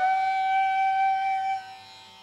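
Flute sliding up into one long held note that fades away about a second and a half in.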